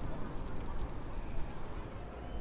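Wind rumbling on the microphone over the steady hiss of small waves breaking on a sandy beach.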